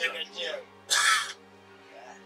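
A crow calls once, a single harsh caw about a second in, over a man's speech and low background music.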